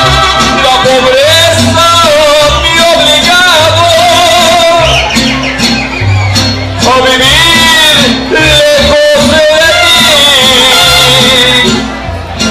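Live mariachi music: a man sings with vibrato into a microphone, backed by strummed vihuela and guitar and the plucked bass notes of a guitarrón.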